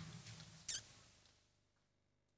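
Near silence: faint room tone fading away, with one brief soft hiss about two thirds of a second in, then complete silence as the sound cuts out.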